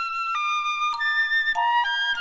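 Piccolo and xylophone duet: the piccolo holds long, high notes that change pitch a few times, with sharp struck xylophone notes beneath.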